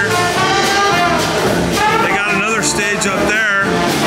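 Live jazz band with saxophones and brass, trumpet and trombone among them, playing an up-tempo number, with wavering held notes a couple of seconds in.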